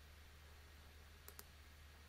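Near silence: room tone with a low steady hum, and a couple of faint computer mouse clicks close together just past the middle.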